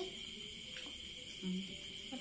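Crickets chirping in a steady, high, unbroken drone, with a person giving a short closed-mouth hum about one and a half seconds in.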